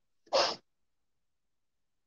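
One short, sharp burst of breath and voice from a woman close to the microphone, about a third of a second in.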